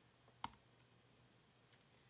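A single sharp computer-keyboard keystroke click about half a second in, with a few much fainter ticks after it, against near silence.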